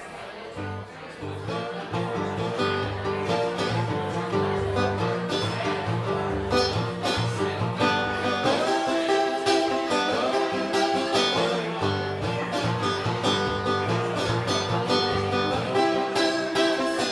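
Acoustic guitar played live, opening a song with a steady, rhythmic run of picked and strummed notes that grows louder over the first couple of seconds.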